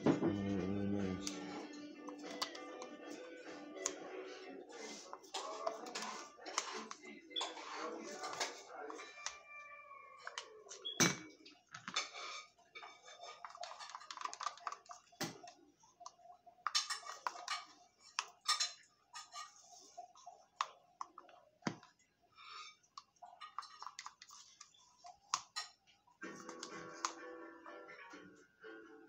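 A song playing in the room, with a run of sharp clicks and light knocks from plastic paint cups and stirring sticks being picked up and handled on a table; the loudest is a single knock about eleven seconds in.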